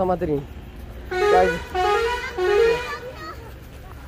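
Vehicle horn sounding three held toots in quick succession, the pitch stepping between notes like a multi-tone musical horn. A short vocal 'oh' call comes right at the start.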